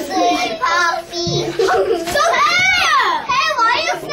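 Young children talking and calling out in high voices, with short pauses between phrases.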